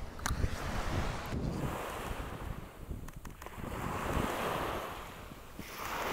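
Sea surf washing onto a sand beach, swelling about four seconds in and again near the end, with wind rumbling on the microphone.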